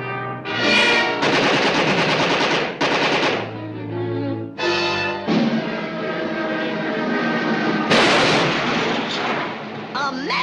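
Cartoon soundtrack: a loud, rapid rattling sound effect like machine-gun fire over orchestral music, in two long stretches with a short break about four seconds in.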